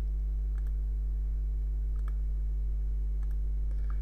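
Steady low electrical hum, a mains-type buzz in the recording, with a few faint mouse clicks over it.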